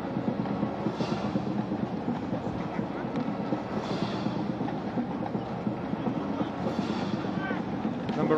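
Steady, even murmur of a large football stadium crowd between plays.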